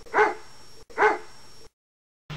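A dog barking twice, about a second apart, each bark short. The sound cuts off suddenly near the end.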